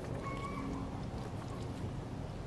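Water pouring steadily from a watering can onto the soil and plants of a raised garden bed.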